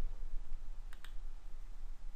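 A couple of short, sharp computer mouse clicks, one at the start and one about a second in, over faint background hiss.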